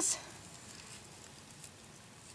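Faint, steady background hiss in a pause between words, with one tiny click about one and a half seconds in.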